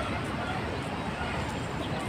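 Busy city street ambience: a steady mix of traffic noise and people talking nearby.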